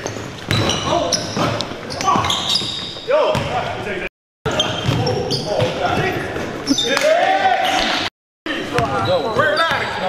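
A basketball being dribbled on a hardwood gym floor, with sneakers squeaking and players' voices calling out, echoing in a large gym. The sound cuts out completely for a moment twice, about four and eight seconds in.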